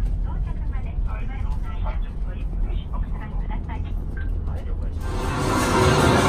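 Steady low rumble of a bus in motion, heard from inside the cabin, with faint voices over it. About five seconds in it cuts suddenly to louder music and chatter.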